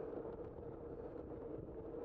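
Bicycle rolling along a paved path: steady road noise from the moving bike, with a continuous low hum and some wind on the microphone.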